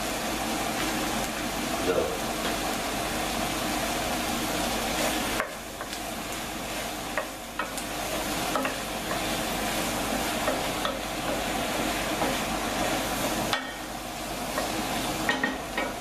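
Green olives and onion frying in oil in a nonstick pan, sizzling steadily while a wooden spoon stirs them. The sizzle drops briefly twice, once about five and a half seconds in and again near the end.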